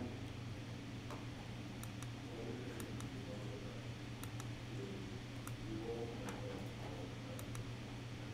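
Faint, scattered clicks of computer input while a duct size is set in software, several in quick pairs, over a steady low room hum.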